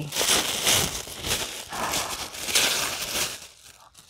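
Tissue paper rustling and crinkling as a gift is unwrapped by hand, in several louder spells that die down near the end.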